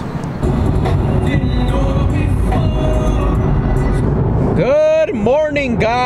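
Steady low rumble of a 2023 Nissan Z driving, heard inside the cabin, with music playing faintly. From about four and a half seconds a man sings along loudly.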